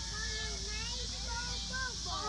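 Several people's voices talking and exclaiming over one another, faint and overlapping, with a steady high hiss underneath.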